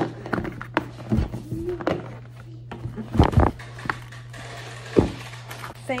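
A rigid cardboard shoe box being handled and opened on a table: a series of knocks and scuffs, the loudest about three seconds in and again at five seconds, over a steady low hum.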